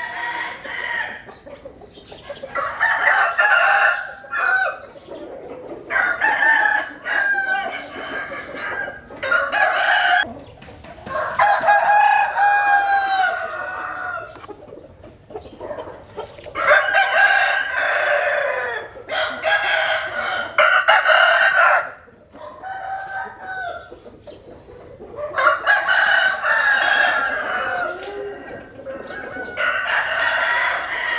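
Roosters crowing again and again, one long crow after another with short pauses between.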